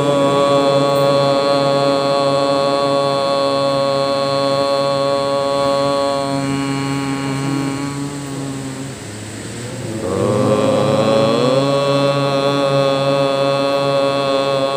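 A man chanting long, drawn-out held notes into a microphone over a PA, as at the opening of a devotional recitation. One note is held for about nine seconds and fades; after a brief break, a second note slides up in pitch and is held steadily.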